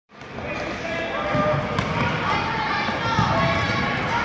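A futsal ball being kicked and bouncing on a hard indoor court, with one sharp kick about two seconds in, over the voices of players and spectators.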